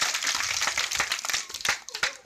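Audience applause: many people clapping in a dense burst that thins out and dies away near the end.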